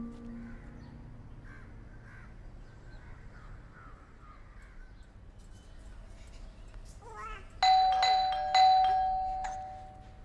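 Doorbell chime: two ringing strikes about a second apart, each ringing out and fading away.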